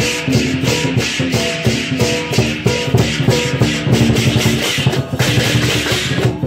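Lion dance percussion band: a large Chinese drum and clashing cymbals beating a fast, steady rhythm of about five strokes a second, with a stepping melody playing along. The cymbals drop out about five seconds in.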